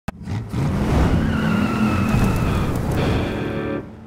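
Logo-intro sound effect: a car engine revving with a tyre screech, opening on a sharp click and ending in a short music chord that fades out near the end.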